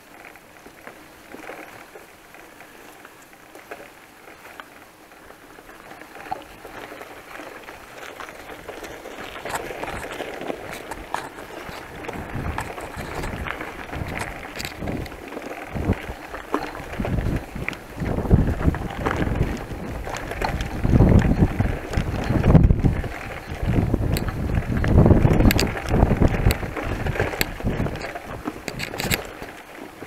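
Bicycle riding over a rough dirt track, picked up by a handlebar-mounted camera: tyre noise with small clicks and rattles from the bike. It grows louder after the first several seconds, and in the second half heavy wind gusts buffet the microphone.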